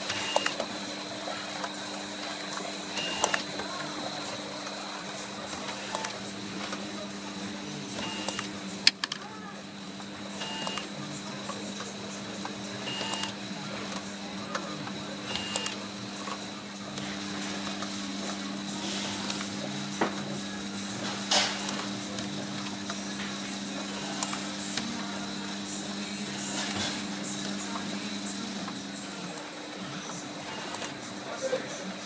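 Pago automatic self-adhesive labelling machine running, with a steady hum from its conveyor and drives. Scattered sharp clicks and knocks come as plastic bottles pass through, and short high tones sound every few seconds in the first half.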